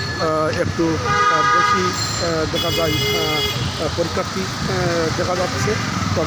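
Street traffic with two vehicle horn blasts over people's voices. The first blast comes about a second in and lasts under a second. A higher-pitched one comes about two and a half seconds in and lasts about a second.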